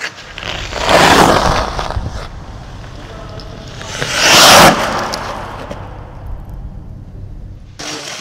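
Ice skate blades scraping and carving across the rink ice in two loud swells, about a second in and again, louder, around four seconds in, over a low steady rumble.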